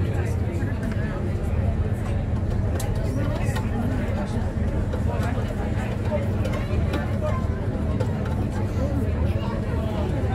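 Steady low drone of a river tour boat's engine, heard from inside the cabin, with people talking over it.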